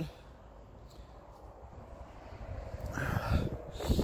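Wind rumbling on the microphone, quiet at first and growing louder in the second half.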